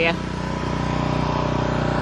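Pressure washer's engine running steadily at an even pitch.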